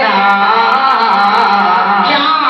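A man singing a naat (Urdu devotional praise poem), holding one long sustained note.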